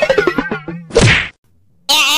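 A rapid rattling sound falling in pitch, then a single loud whack about a second in, marking a body-to-body collision.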